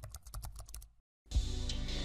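Keyboard-typing sound effect: a rapid run of key clicks, about ten a second, that stops about a second in. A steady background music bed then comes in.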